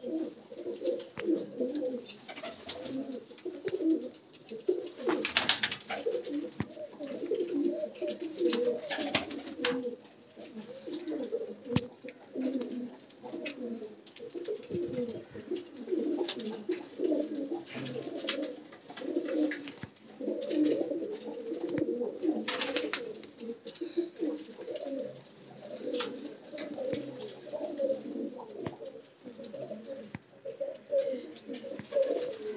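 Several domestic Qasuri pigeons cooing over one another without a break, with a few short scratchy rustles in between.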